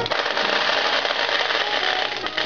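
Ukiyo-e pachinko machine giving out a steady, dense rattling noise in place of its tune, which drops out at the start and returns just after.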